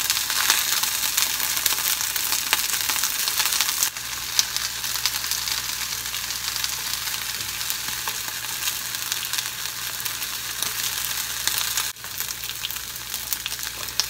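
Pieces of white spring onion (negi) frying in sesame oil in a frying pan over low heat: a steady sizzling hiss with small crackles.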